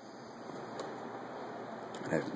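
Quiet, steady background hiss with two faint clicks, one about a second in and one near the end.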